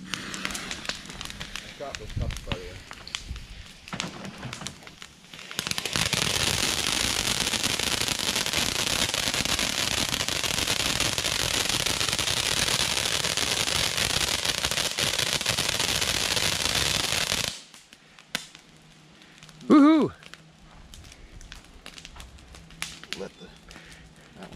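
Ground fountain firework (a red and green fountain) spraying sparks with a loud, steady hiss. The hiss starts suddenly about five seconds in, after a few seconds of scattered crackling, runs for about twelve seconds and cuts off abruptly as it burns out.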